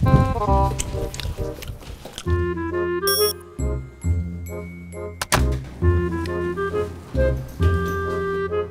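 Light background music with a steady, bouncy bass rhythm and short repeated melody notes. A single sharp hit sounds a little past five seconds in.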